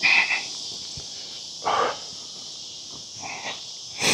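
Steady high-pitched insect chorus in woodland at dusk, with three short rasping sounds: one at the start, one a little under two seconds in, and a fainter one near the end.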